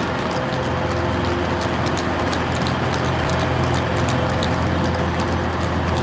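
Steady electrical hum of an Avanti West Coast Class 390 Pendolino standing at the platform, its pitch holding level, with faint clicks of footsteps on the paving.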